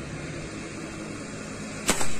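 A single sharp hunting shot near the end, fired at a water bird on the canal bank, over a steady low hum; the shot is a hit and the bird drops on the spot.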